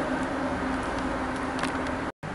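Steady background hum and hiss of an indoor garage bay, with one faint tick near the end.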